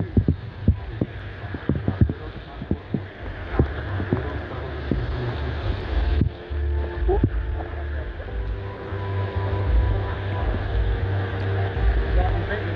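Low rumble of a car driving through heavy rain on a flooded road, with a run of irregular knocks in the first few seconds. A car radio plays music faintly, with held notes coming in about halfway.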